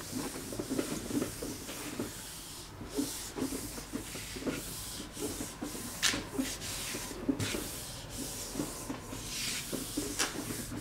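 Hands rubbing and pressing a sheet of paper down onto a paint-covered gel printing plate: a soft, uneven dry rubbing and rustle of palms on paper, with a couple of brief sharper swishes, one about six seconds in and one near the end.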